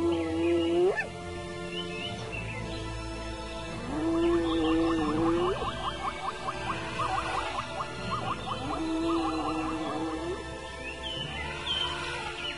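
Spotted hyena whooping: three long, even calls about four seconds apart, each holding its pitch and then sliding upward at the end. This is the hyena's long-distance contact call.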